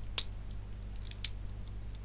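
Plastic parts of a knockoff Transformers figure clicking as it is folded by hand from robot into tow-truck mode: a sharp click just after the start, another about a second later, and a few fainter ones.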